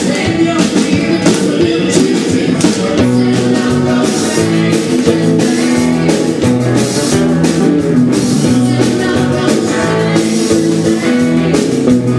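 Live country-rock band playing: a woman singing lead over electric bass, electric guitar and a drum kit keeping a steady beat.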